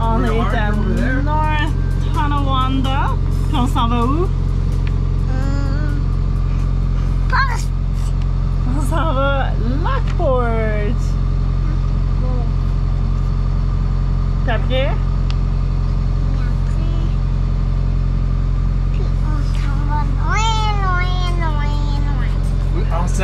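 Boat engine running at a steady cruising speed, a constant low hum with a steady drone that does not change throughout, under way on calm canal water. A child's high-pitched voice talks over it at intervals.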